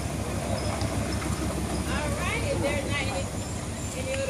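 Indistinct voices about halfway through, over a steady low rumble.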